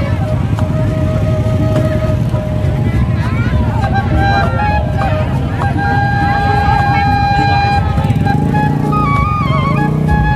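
Loud music from a large loudspeaker stack: a melody of long held notes that step up and down over a heavy low beat, with crowd voices underneath.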